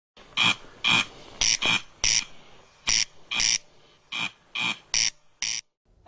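Corncrake calling: a run of about eleven short, dry, rasping calls, roughly two a second, that stops just before the end.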